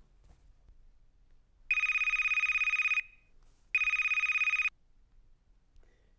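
Phone ringing with an electronic trill: two rings, the second a little shorter, with a short pause between them.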